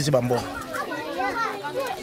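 Children's voices talking and calling, several at once, with a man's voice trailing off at the very start.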